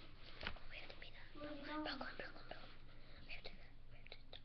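A child's faint whispering and soft voice, with a brief pitched murmur in the middle, and a few small clicks of handling and toys.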